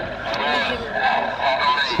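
Speech only: voices of people talking, not clearly picked out as words.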